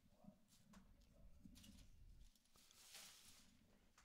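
Near silence: faint low background rumble, with a faint hiss swelling briefly about three seconds in.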